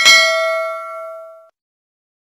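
Notification-bell 'ding' sound effect: a single bright chime with several overtones that fades over about a second and a half, then cuts off suddenly.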